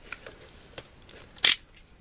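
Utility knife blade scraping and slicing through the seal of a cardboard Lego box: a few faint scratches, then one sharp, shrill scrape about one and a half seconds in, like scraping a blackboard.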